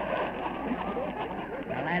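Studio audience laughing, heard through an old narrow-band radio recording, dying down as a man starts speaking near the end.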